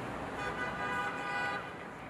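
A car horn sounds once, a steady note held for about a second, over city traffic noise.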